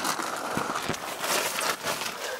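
Rustling and crinkling of tent fabric and a plastic bag as someone crawls in through a tent doorway, in many small irregular scuffs.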